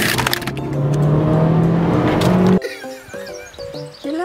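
Car engine pulling hard under acceleration, its pitch climbing steadily, with a rushing noise over it; it cuts off suddenly about two and a half seconds in. Light plucked-string background music follows.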